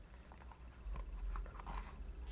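Fingers handling a leather Ugg loafer close to the microphone: small irregular clicks and rubbing sounds from the leather.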